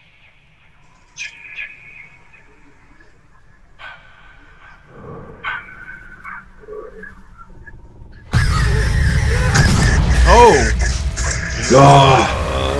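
Horror film soundtrack: a quiet stretch with faint scattered tones, then about eight seconds in a sudden loud blast of music and noise, with two wailing sounds that rise and fall in pitch.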